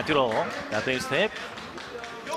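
A man's voice, a boxing commentator, talking over steady arena crowd noise, with a short thump about a second in.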